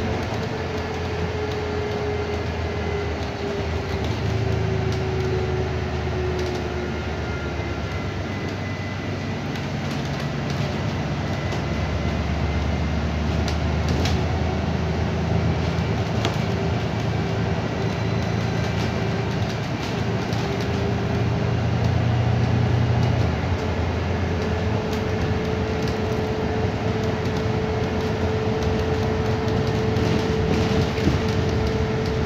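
Interior running noise of a moving bus: a steady drone with a faint whine that drifts slightly in pitch, a low rumble that swells and eases off, and a few brief rattles.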